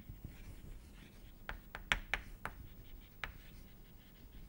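Chalk writing on a chalkboard: a string of short, sharp taps and faint scrapes, bunched in the middle, as words are chalked onto the board.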